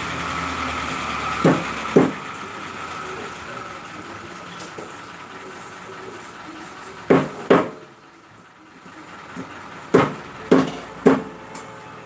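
A kitchen knife chopping on a wooden cutting board, seven sharp strikes: two about a second and a half in, two a little after the middle, and three in quick succession near the end.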